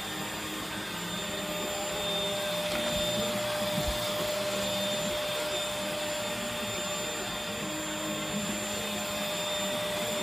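Bissell corded stick vacuum running steadily, a constant motor whine over a rushing of air, as it is pushed back and forth over a rug. A low bump about four seconds in.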